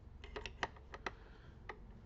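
Screwdriver clicking against the screws and stand of an all-in-one PC as the stand is unscrewed: about seven sharp, irregular clicks, most of them bunched in the first second.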